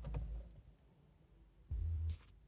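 Car ignition key turned to the on position with the engine off: a sharp click just after the start, then low rumbling, with a louder low thump near the end.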